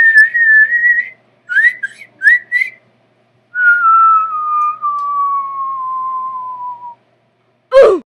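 Whistled cartoon sound effects: a held whistle note, three short rising chirps, then a long whistle gliding slowly down in pitch, and a quick falling swoop near the end.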